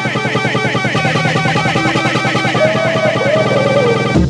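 Happy hardcore breakbeat track in a build-up: a fast drum roll that quickens under repeating synth riffs, with a gliding lead line near the end.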